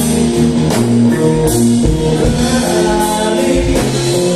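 Live rock band playing loudly: a singer over electric guitars, bass guitar and drum kit, with a few cymbal and drum hits cutting through.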